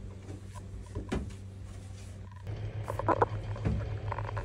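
A few light knocks and clicks in a hollow space, then a steady low hum that starts about two and a half seconds in.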